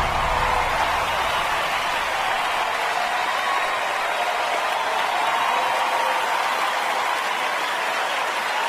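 Large theatre audience applauding in a standing ovation, a steady wash of clapping. The low end of the music fades out in the first second or two.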